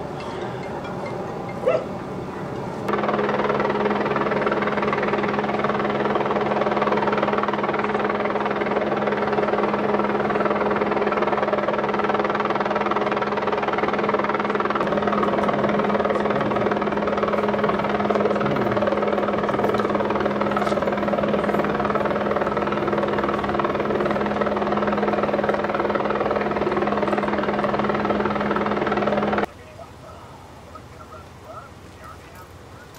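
A loud, steady mechanical drone with several fixed pitched tones. It starts abruptly about three seconds in and cuts off abruptly just before the end.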